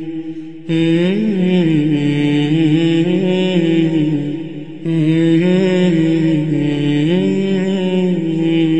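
A man's voice chanting unaccompanied in long, drawn-out melodic phrases with ornamented turns, pausing briefly for breath just under a second in and again about halfway through.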